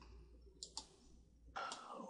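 Near silence with two faint, quick clicks in close succession a little over half a second in, and a faint noise near the end.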